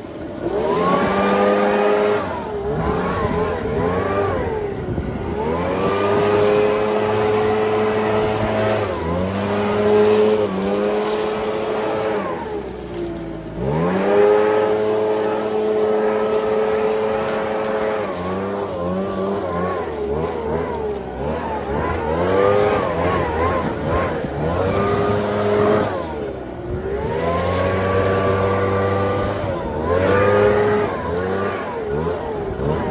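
Gas-powered leaf blower engine throttled up and down over and over, its pitch rising, holding for a few seconds and dropping back, with two brief drops to low revs about halfway through and near the end.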